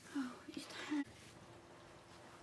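A soft, half-whispered spoken "oh" and a brief murmur lasting about a second, then quiet room tone.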